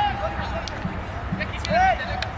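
High-pitched voices shouting across an open field: one long held shout at the start and a short rising-and-falling one near the end, with a few sharp knocks in between.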